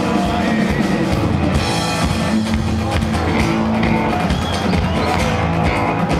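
Live band playing an upbeat rock number, with guitars and a drum kit, amplified through the hall's sound system.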